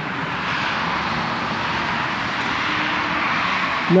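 Steady rushing roar of a distant vehicle, swelling at first and then holding level.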